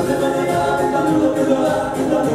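Live band dance music with singing, several voices together over a steady beat.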